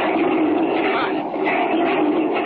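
Radio-drama sound effect of an avalanche: a steady, dense rushing noise of tumbling rock, dull and narrow in tone like an old transcription recording.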